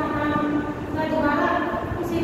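A woman speaking Hindi in a drawn-out, sing-song voice.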